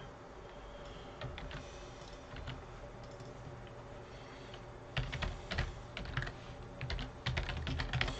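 Typing on a computer keyboard: a few light keystrokes at first, then a quicker run of keys in the second half.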